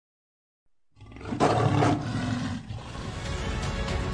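A lion's roar about a second in, the loudest thing here, then intro music with a steady beat.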